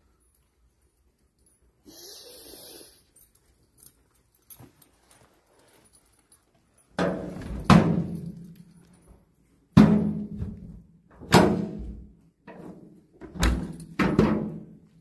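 Loud clanging thuds on a sheet-metal stable door, starting about seven seconds in and coming five or six times at one- to two-second gaps, each ringing briefly with a low hum.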